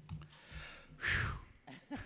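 A man breathes out sharply into a close desk microphone about a second in, a single loud breathy rush. Short voiced sounds, the start of a chuckle or of speech, follow near the end.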